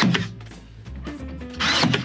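Cordless nail gun firing a brad nail once into wood near the end, with background music throughout.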